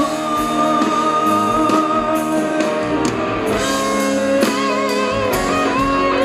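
Live song performance: a man singing held notes over a strummed acoustic guitar, with the strums going on steadily throughout.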